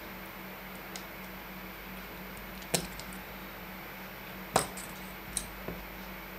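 Small sharp clicks of metal tweezers and tiny parts against the opened Fitbit Charge 3 tracker, a few light ticks with two louder clicks a couple of seconds apart, over a low steady hum.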